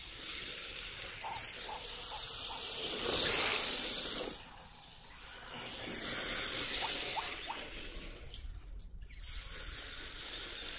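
Tyres of a radio-controlled drift car sliding across asphalt with a hiss that swells and fades as the car drifts around. The hiss is loudest a few seconds in, drops away briefly about halfway through, then builds again.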